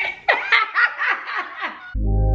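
A woman laughing, a run of about seven short laughs, each falling in pitch. Music starts just before the end.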